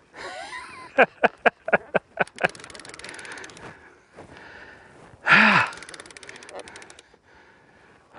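Baitcasting reel clicking while a big fish pulls on the line: a few sharp clicks, about four a second, then a fast run of fine clicking. About five seconds in there is a loud gasp or grunt of effort from the angler.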